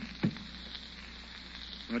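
A punch sound effect: a quick thump or two right at the start, over the steady crackling surface hiss of an old radio transcription recording.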